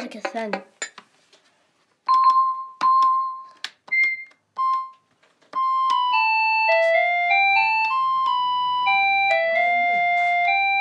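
Small toy electronic keyboard played by hand: a few separate held notes with silent gaps between them, then from about five and a half seconds a continuous simple melody of plain notes stepping up and down.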